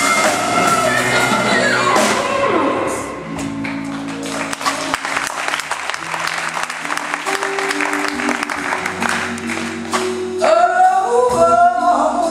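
Live blues band: a female singer's voice held and bending over the band at the start, then the band plays on without her, with electric guitar, bass line and drums, and her singing comes back in near the end.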